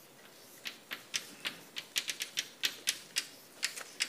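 Chalk writing on a blackboard: a run of sharp, irregular taps and clicks, about four a second, starting about half a second in.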